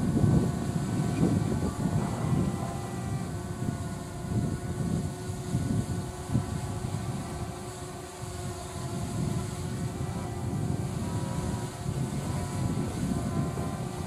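Wind buffeting the microphone in uneven gusts, over a steady hum of several held tones from a distant electric freight train hauled by twin-section E479.1 (class 131) locomotives.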